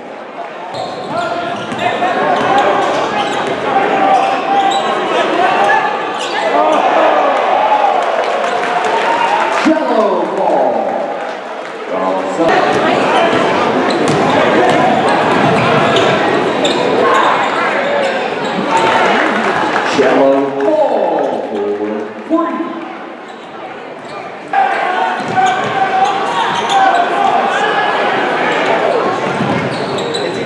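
Basketball game sound in a large gym: the ball dribbling on the hardwood floor over a steady din of crowd voices and shouts. The sound jumps abruptly twice, where clips are cut together.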